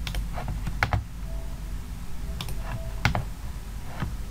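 A few sharp, irregularly spaced clicks from a computer keyboard and mouse, over a steady low background hum.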